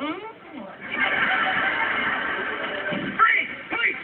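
Sitcom soundtrack played from a television: voices and music together, with a dense loud stretch in the middle and a short voice-like exclamation near the end.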